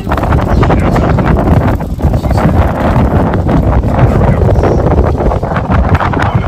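Strong wind buffeting the microphone: a loud, gusty rumble.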